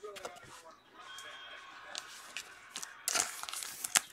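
Crinkling of a thin clear plastic card sleeve as a trading card is handled and slid out of it, loudest in a burst of crackles near the end.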